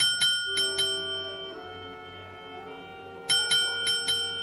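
A small bell rings in a quick cluster of strikes at the start and again near the end, over sustained dramatic music.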